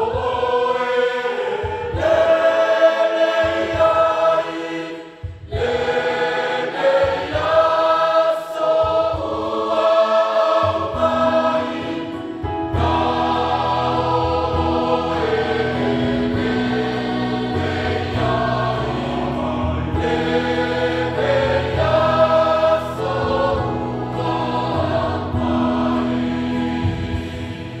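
Mixed church choir singing a Samoan hymn in parts, accompanied by an electronic keyboard. There is a brief pause between phrases about five seconds in, and from about eleven seconds a sustained low bass note joins underneath the voices.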